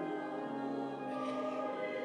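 Congregation singing a hymn with keyboard accompaniment, in held notes that change pitch about halfway through.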